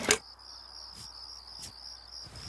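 Crickets chirping steadily as night ambience, with a sharp click at the very start and two faint ticks later on.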